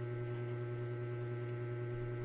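Steady low electrical hum with several fainter steady tones above it.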